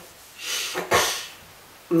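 A man breathing out audibly twice through his nose and mouth: a softer breath, then a short, sharp puff about a second in.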